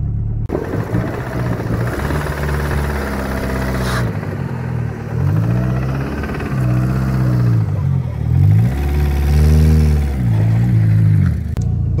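Peugeot 106 engine revving up and falling back again and again, each rev rising and dropping over about a second, over a steady low rumble.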